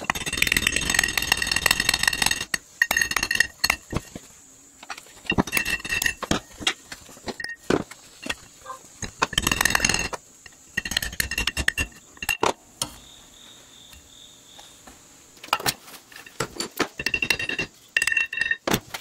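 Rapid light hammer taps on a steel drift, driving a press-fit pilot bearing adapter into a steel flywheel's centre bore. The taps come in bursts of a second or two, each burst carrying a ringing metallic note.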